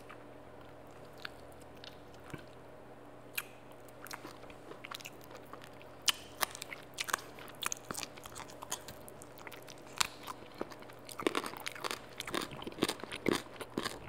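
Close-miked eating: a person biting and chewing fried food, with crisp crunches and wet mouth clicks. Only a few soft clicks at first, then the crunching grows busier from about four seconds in and is densest in the last few seconds. A faint steady hum lies underneath.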